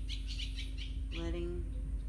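A bird chirping in a quick run of short, high notes, about eight a second, followed just past halfway by a longer held call with a steady pitch.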